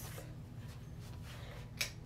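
Steady low room hum with a single sharp click near the end.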